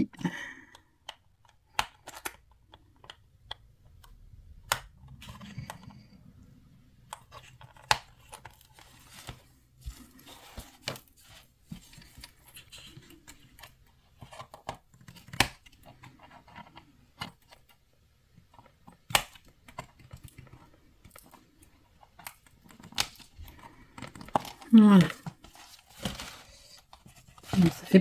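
Sporadic small clicks and knocks of hands working a cardboard box, piercing its side wall with a beaded craft awl.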